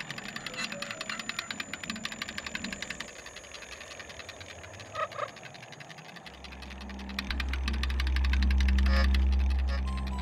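Film soundtrack of music and sound effects. A fast, even clicking runs under a high thin tone, then two short pitched blips come about five seconds in. From about six seconds a deep low drone swells up and is loudest near the end.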